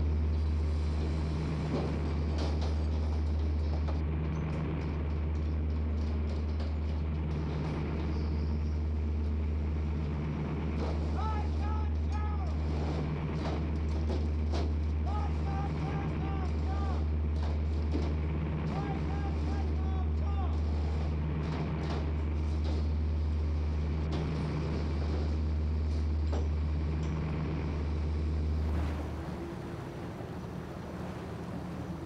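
Warship's engines throbbing below decks, a deep pulse swelling about once every second and a half, with faint calls and clicks over it, stopping about a second before the end.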